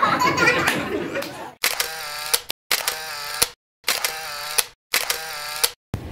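Voices and laughter for about a second and a half. Then four edited-in sound-effect bursts follow, each a little under a second long with a sharp start, separated by dead silence.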